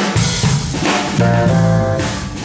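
Live band playing: drum kit with bass drum and snare hits under electric bass and electric guitar, with a keyboard on stage. A held chord sounds from a little past a second in until just before the end.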